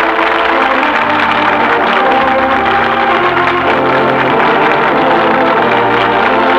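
Closing music of a 1940s radio drama: slow, sustained chords that change in steps.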